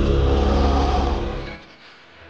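Dramatic score sound design: a loud, deep rumble under several held tones, which drops away sharply about one and a half seconds in, leaving a faint low hum.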